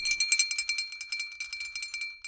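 Small jingle bells shaken rapidly, a dense high jingling over a steady ringing tone.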